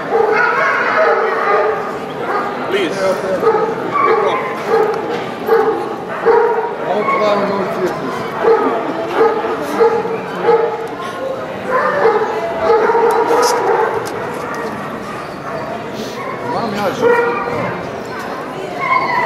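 Dogs barking and yelping again and again, over people talking.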